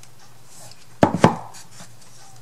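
Two sharp knocks about a quarter second apart, about a second in: a small wooden craft storage box being set down on a tabletop.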